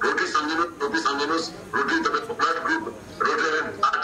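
A man's voice speaking into a microphone over a public-address system, in short phrases broken by brief pauses.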